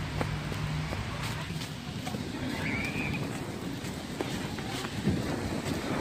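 Wind noise on the microphone outdoors, with scattered faint footsteps on wet, leaf-covered pavement.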